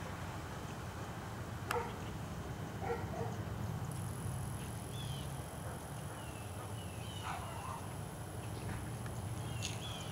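Outdoor ambience: birds giving short chirps now and then, and a steady high-pitched insect drone that starts about four seconds in, over a low background rumble. A single click sounds near the start.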